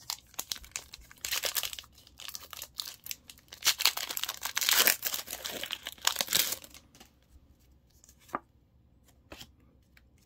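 A Pokémon TCG booster pack's foil wrapper crinkling and being torn open, a dense crackling that is loudest in the middle for a few seconds and stops well before the end. A couple of sharp clicks follow in the quieter last part.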